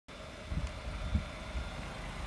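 A few soft, irregular low thuds over a faint steady hum: footsteps and handling of a hand-held camera as it is carried around.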